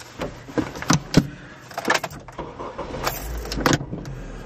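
Handling noise from a camera being moved against a car windshield: scattered clicks and knocks, with a brief low rumble about three seconds in.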